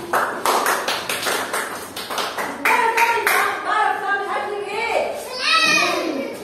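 Young children clapping their hands, quick claps about five a second for the first two and a half seconds, then children's voices calling out.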